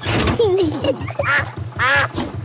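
Cartoon duck quacking several times, in short pitched calls, over a canal boat engine's steady low chugging, with light background music.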